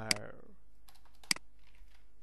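Two sharp clicks of computer input, about a second apart, over a faint steady low hum.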